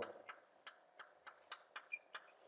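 Chalk writing on a blackboard: faint, irregular ticks as the chalk taps and strokes the board, about three or four a second.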